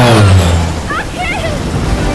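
Film sound effect of a burning aircraft going down: a loud engine note falls steeply in pitch through the first second, followed by a short wavering vocal cry about a second in.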